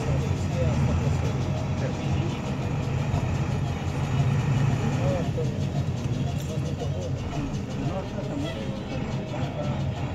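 A vehicle's engine running steadily as it drives, a low even hum, with voices over it.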